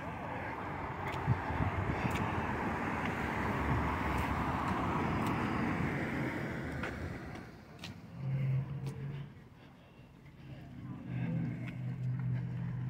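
A car driving past on the street: its road noise swells and fades away over about seven seconds. A low steady hum follows twice, briefly.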